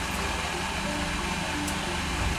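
A steady low hum with an even hiss above it, like ventilation or machinery running, with no sudden events.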